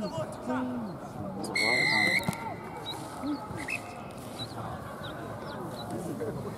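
A referee's whistle: one short, steady blast about a second and a half in, stopping play after a tackle, over players' shouts and voices.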